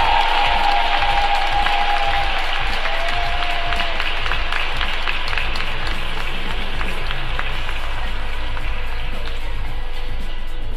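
Audience applauding over background music, the applause easing off slightly toward the end.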